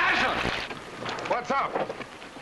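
Men's voices shouting calls over a steady wash of splashing water, one shout at the start and another about a second and a half in.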